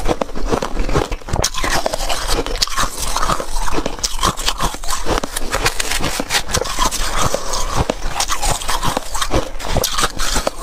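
Close, dense crunching and crackling of freezer frost being chewed, along with a spoon scraping and scooping the powdery ice in a metal bowl.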